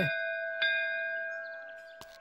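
Temple bell ringing, struck again about half a second in, its tones slowly dying away.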